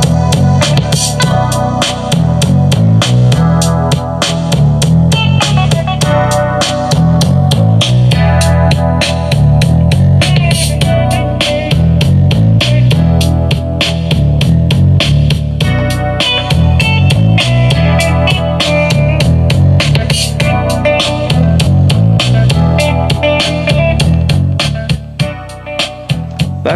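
Instrumental music with guitar, a strong bass line and a steady drum beat, played loud through the ROJEM HBPC1602B portable bass-tube speaker (two 5.25-inch woofers and two 2.5-inch full-range drivers). The speaker's bass boost is on, giving a lot of bottom end.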